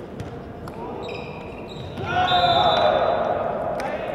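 Volleyball rally on an indoor court: the ball is struck with sharp knocks, and sneakers squeak on the hall floor. About two seconds in, players' voices shout loudly.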